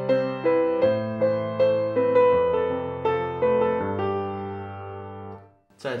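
Piano playing a right-hand melody over a left-hand accompaniment of four notes per chord, with the bass changing every second or so. The phrase ends and the last notes die away shortly before the end.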